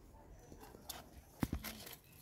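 Hands working among zucchini plants, with a few quiet sharp snaps and rustles of stems and leaves, the loudest about one and a half seconds in.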